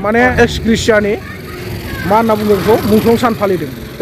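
A man talking, with a short pause about a second in.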